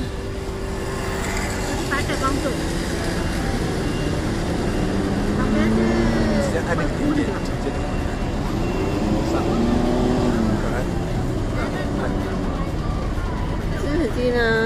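City street traffic: a steady low rumble of buses and cars, with engine notes rising and falling as vehicles pass, about five seconds in and again about nine seconds in.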